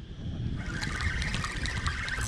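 Spinning reel being cranked by hand: a fast ticking whir that starts about half a second in, over a low rumble of wind and handling on the microphone.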